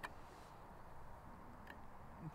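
Near quiet, with a sharp click at the start and a fainter click near the end, from a metal tin can being handled by hand.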